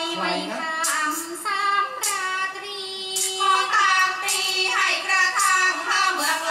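A woman singing a Thai classical song for lakhon nok dance-drama, in a high voice with long held notes that slide and waver.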